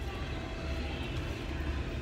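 Steady low background rumble with a faint hum, without clear strokes or changes.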